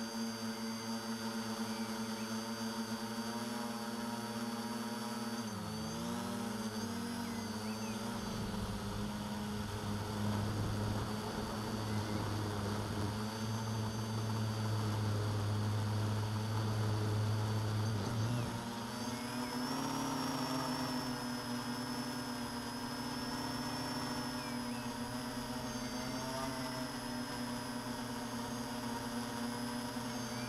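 Quadcopter's four brushless motors and 9x5 carbon propellers humming in flight, a steady chord of motor tones. The pitches dip and swerve about six seconds in and shift again at about eighteen seconds as the motors change speed to steer the craft.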